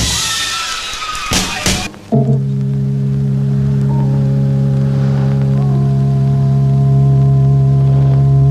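Film soundtrack music: a busy passage with voices and sharp drum hits breaks off about two seconds in. A long sustained organ chord then sets in and holds, with more notes entering above it.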